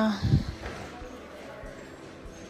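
A single dull, low thump of handling noise as a metal bundt pan is turned over in the hand, followed by low steady background noise.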